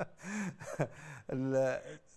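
A man's voice making short wordless vocal sounds and a held, drawn-out vowel in the second half, a hesitation between phrases of speech.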